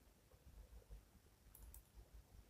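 Near silence: faint room tone, with two faint, quick computer-mouse clicks about one and a half seconds in.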